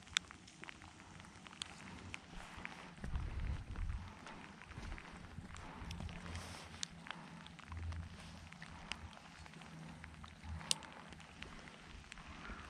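Faint outdoor ambience at the water's edge, with low rumbling gusts coming and going and scattered small clicks and rustles as an angler handles bait, line and a spinning rod.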